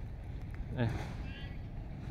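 A man's short, faint vocal sound a little under a second in, over a low steady background rumble.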